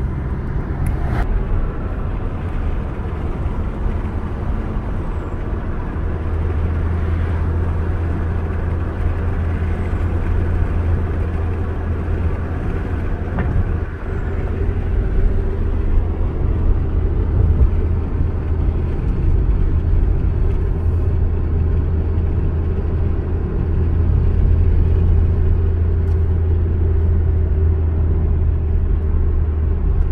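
A car being driven, engine and road noise heard from inside the cabin: a steady low rumble whose hum grows stronger about six seconds in.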